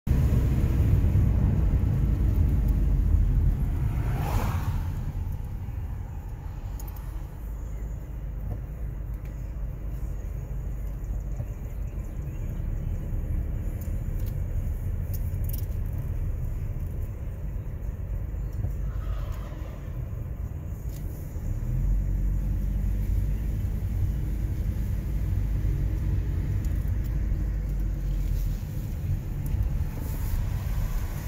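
Low, steady rumble of a car running, heard from inside the cabin, louder in the first few seconds and again in the second half. Two short higher-pitched sounds come through, about four and nineteen seconds in.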